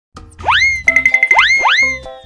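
Playful background music with cartoon-style rising 'boing' sound effects: three quick upward pitch glides and a warbling held high note over a steady bass line.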